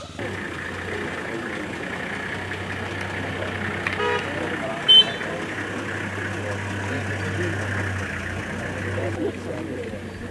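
A vehicle engine running steadily under background voices, with a brief horn-like tone about four seconds in and a short, sharp loud sound about a second later.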